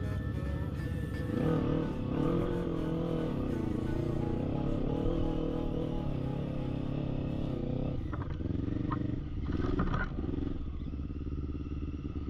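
Quad bike (ATV) engine revving up and down as it climbs a rough, rocky trail, with background music mixed over it.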